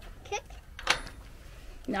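A wooden chicken-run door being opened, with one sharp click from its latch just under a second in.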